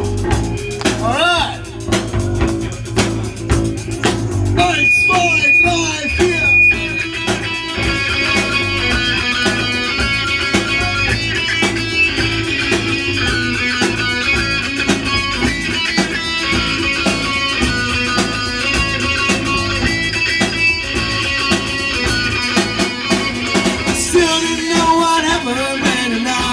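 Live rock band playing, with electric guitar over a drum kit.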